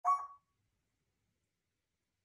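A single brief call from an African grey parrot inside its blanket-covered cage, lasting under half a second.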